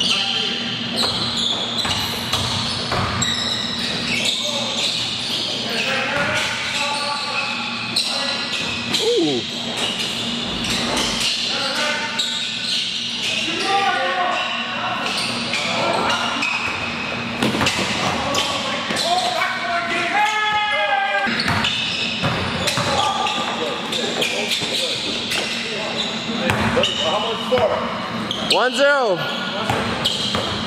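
A basketball being dribbled and bouncing on an indoor court floor during a pickup game, echoing in a large gym, with players' voices calling out over it.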